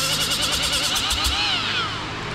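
Cordless rotary tool with a small abrasive disc scrubbing old gasket material off a thermostat housing's mating face. Its motor whine wavers in pitch as the disc bites, then falls away in pitch over the last half second as the tool winds down.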